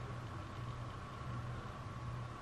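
Steady background hum and hiss of room tone, with a faint high steady tone and no distinct handling sounds.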